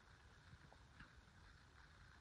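Near silence: faint room tone, with one faint tick about a second in.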